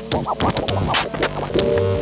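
Turntable scratching over a beat: a record pushed back and forth under the needle in short rising and falling sweeps, chopped on and off with the mixer fader, with a held note near the end.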